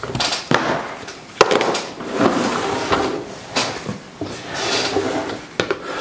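Things being handled and set down on a workbench: a run of knocks, scrapes and rustling, with a sharp knock about one and a half seconds in.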